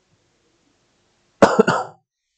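A man coughing: one short, loud cough made of a few quick bursts, about one and a half seconds in, after near silence.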